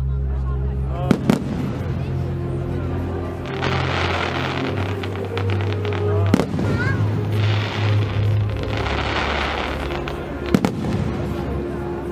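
Fireworks going off: sharp bangs about a second in, another around six seconds, and a quick double bang near ten and a half seconds. Music with a steady bass plays under them.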